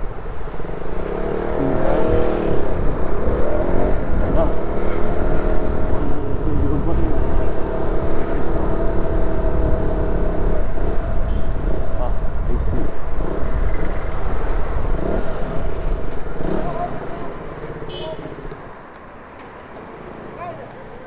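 KTM Duke 200's single-cylinder engine running as the bike is ridden through traffic, its pitch rising and falling with the throttle under a heavy low rumble of wind on the helmet microphone. Near the end it quiets as the bike slows to a stop.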